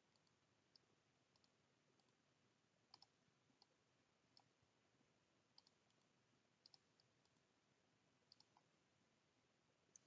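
Near silence, with faint computer mouse clicks scattered through it, a dozen or so, some in quick pairs.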